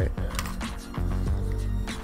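Background music with a steady bass line, over light clicks and slides of trading cards being flipped through by hand and set down.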